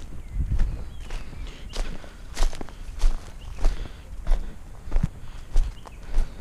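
Footsteps of a person walking over a dirt track strewn with dry bark and leaf litter, a crunching step about every two-thirds of a second.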